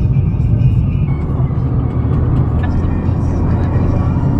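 Steady low rumble of road and engine noise heard inside a small car's cabin while it is driven along.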